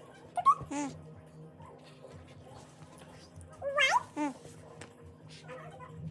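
Two short, high-pitched squeaky vocal sounds rising in pitch, one just under a second in and one about four seconds in, with a sharp knock near the first and a steady low hum underneath.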